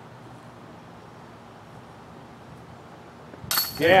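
Quiet outdoor background, then near the end a disc golf putt strikes the basket's metal chains with a sudden jingling clink that rings on, over a spectator's shout of "yeah".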